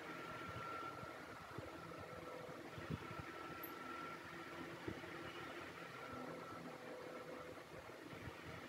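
Faint steady background hum with a few soft taps.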